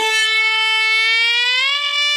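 A voice-acted cartoon character's long, held scream: one steady high note that rises slightly in pitch about one and a half seconds in.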